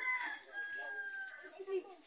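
A rooster crowing faintly: one drawn-out call lasting about a second.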